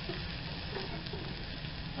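Minced garlic and shallots frying in hot oil in a wok: a steady sizzle.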